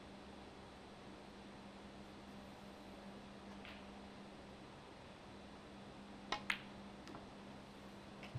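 A snooker shot: two sharp clicks in quick succession about six seconds in, the cue tip striking the cue ball and then the cue ball hitting an object ball, followed by a fainter click. A faint steady hum lies under it all.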